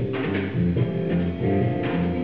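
Live band playing an instrumental passage: electric guitar notes over a moving bass guitar line.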